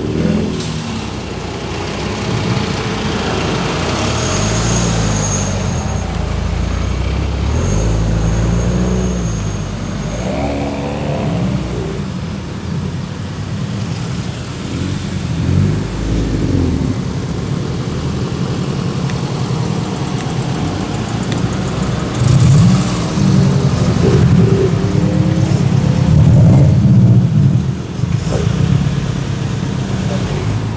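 Several cars driving past one after another at low speed, their engines rising in pitch as each accelerates by. The loudest pass comes about three-quarters of the way through, and a faint high whistle is heard for a few seconds early on.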